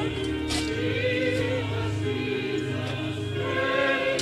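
A group of voices singing a slow hymn together, with long held notes that waver in pitch over a steady low accompaniment.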